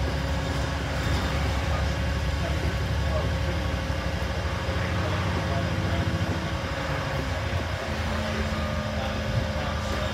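Double-decker bus under way, heard from inside the passenger cabin: the engine and drivetrain run with a steady low drone over road noise, and a new steady hum comes in about eight seconds in.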